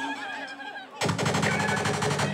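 A machine-gun sound effect fired over the dancehall sound system: a sudden rapid rattle of shots about a second in, running on to the end, after a quieter stretch of crowd noise.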